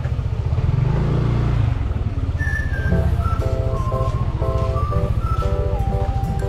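Motor scooter engine running at low riding speed, its revs rising briefly about a second in. Music plays over it from about two seconds in.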